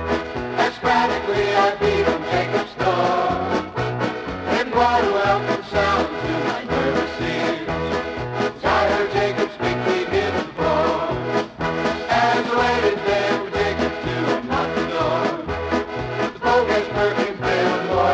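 Polka band music with a steady, evenly repeating oom-pah bass beat under the melody instruments.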